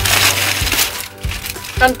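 A thin black plastic bag rustling and crinkling as hands rummage through it. The rustling dies down after about a second.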